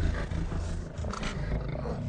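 A big cat's growling roar, the film's sound effect for an undead tiger, over a low rumble.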